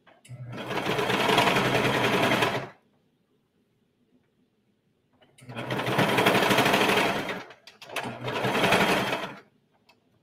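Brother four-thread serger running in three bursts as it stitches around a gathered skirt seam. The first run lasts about two seconds. After a pause of nearly three seconds come two shorter runs close together.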